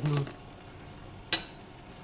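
A single sharp clink of a metal kitchen utensil against metal cookware, with a short ring, about a second and a half in, as steamed dumplings are handled with a spatula over a steel tray.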